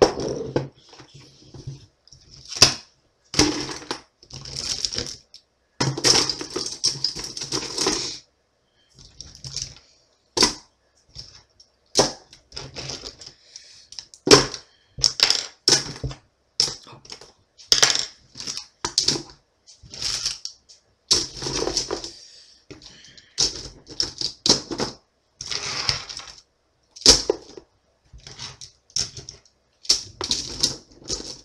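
Plastic pens clattering against each other as they are handled and shifted around in a packed pen case: irregular sharp clicks and rattles, with a few longer stretches of rustling.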